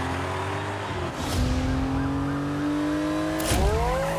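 Car engines running at speed, their pitch climbing slowly and steadily, with a quick upward sweep in pitch near the end as the cars rush forward.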